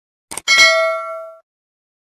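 Subscribe-button animation sound effect: a short mouse click about a third of a second in, then a bright bell ding that rings for about a second and dies away.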